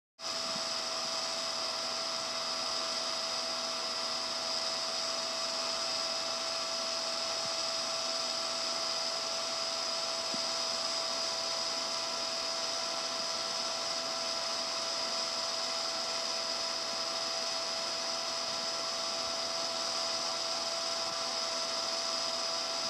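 Steady whirring drone with a high whine and a fixed mid-pitched hum, the background noise of a 1970 home audio recording; it cuts in abruptly out of dead silence right at the start and holds unchanged.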